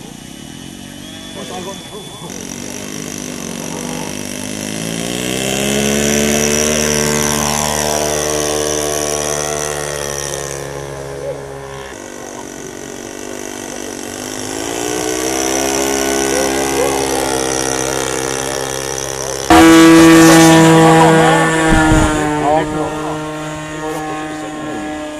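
Radio-controlled model airplane engines running in flight, the note rising and falling in pitch and loudness as the model climbs away and passes. About nineteen seconds in, a much louder, steady engine note starts suddenly, close by.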